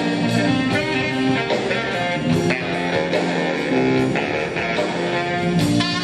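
Big band playing jazz live, with a guitar to the fore over the band.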